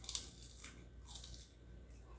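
A short, faint crunch of teeth biting into the crisp skin of a smoked chicken wing, followed by faint chewing.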